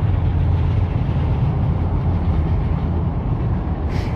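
Tyne and Wear Metro train crossing a high viaduct overhead: a steady low rumble with a faint high whine above it.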